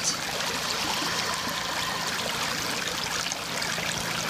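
Shallow creek running steadily over stones and pebbles.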